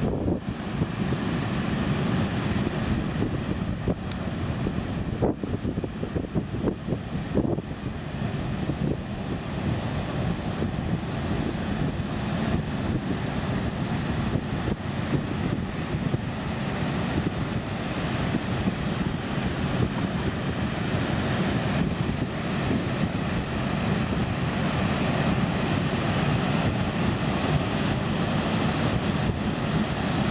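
Heavy Atlantic breakers crashing on rocks and beach in a continuous deep rush of surf, with strong wind buffeting the microphone.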